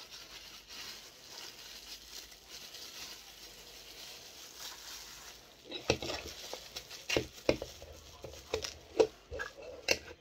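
Faint crinkling of a clear plastic bag around a vinyl figure, then from about six seconds in a run of sharp clicks and knocks as a metal Funko Soda can is picked up and handled at its lid on a wooden table.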